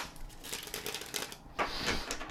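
A deck of tarot cards being shuffled by hand: a rapid patter of card-edge clicks, then a louder rustle of cards near the end.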